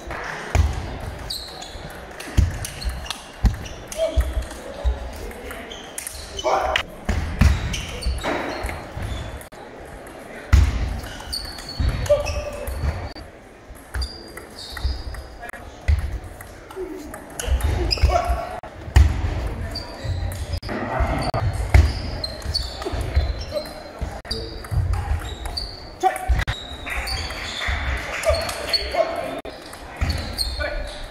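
Table tennis rallies in a large, echoing sports hall: plastic balls clicking off rackets and the table in quick, irregular strokes, with play at several tables at once and a hall full of voices behind.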